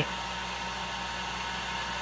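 Electric heat gun running steadily, blowing hot air with a faint constant whine, as it warms a lead jig head before the head is dipped in powder paint.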